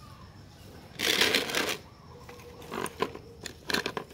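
Latex-gloved hands rubbing and picking through a dog's belly fur: a rustle about a second in, then a few short clicks and crackles near the end.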